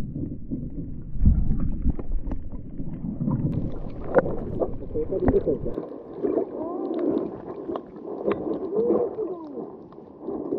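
Muffled underwater sound picked up by a camera in its housing just below the surface of shallow water: a low sloshing rumble in the first half that drops away about six seconds in, scattered clicks, and wavering, muffled voice-like tones in the second half.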